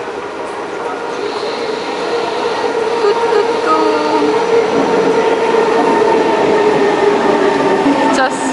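Singapore MRT metro train arriving at the platform: a steady electric whine over rolling rail noise, growing steadily louder as the train pulls in.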